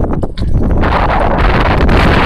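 Wind buffeting the phone's microphone, a loud, rough rumble that drops out briefly near the start and then runs on steadily.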